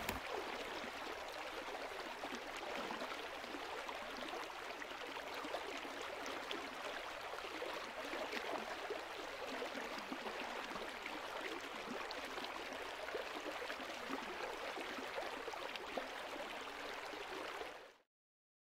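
River rapids rushing over rocks: a steady wash of white water that cuts off abruptly near the end.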